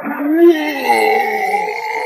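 A young man's long voiced shout, held for about three seconds, a battle cry of exertion as he releases a burst of power.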